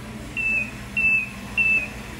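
Tennant T7 robotic floor scrubber beeping three times, short, evenly spaced high-pitched beeps that dip slightly in pitch, over a low steady hum.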